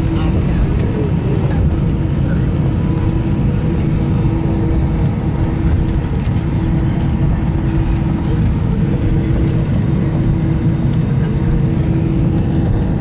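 Steady low rumble of an Airbus A320's engines and airframe heard from inside the passenger cabin while taxiing after landing, with a constant hum over it.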